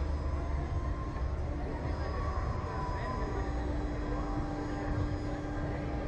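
Steady low rumble with a constant machine hum, unchanging throughout, from the ride's machinery running while the capsule waits on the ground.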